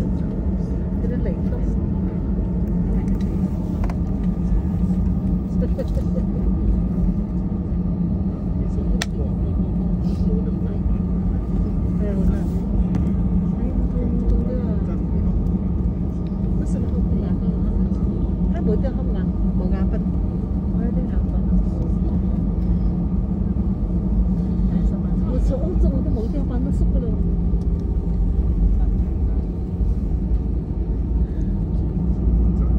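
Airliner cabin noise while taxiing after landing: a steady low rumble from the engines and the wheels rolling on the taxiway, with faint passenger voices under it.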